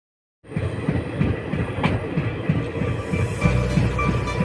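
Silence, then about half a second in the sound of a moving train starts suddenly: rumble and wheel noise on the rails, with music playing over it.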